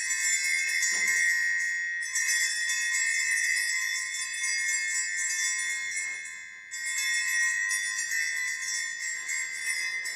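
Altar bells rung at the elevation of the chalice after the consecration: a cluster of small bells rings brightly, is shaken again about two seconds in and once more near seven seconds, and the ringing lingers between shakes.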